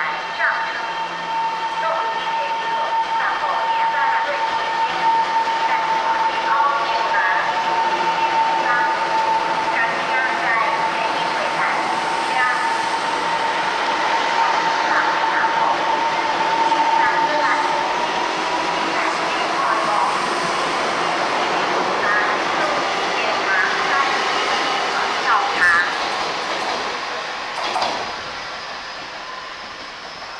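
Taiwan Railways EMU700 electric multiple unit pulling out of a station and running past along the platform. A steady high tone runs through the first two-thirds, and the sound falls away near the end.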